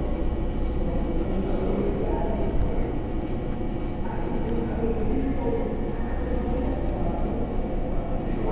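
Steady low rumble with faint murmured voices in the background.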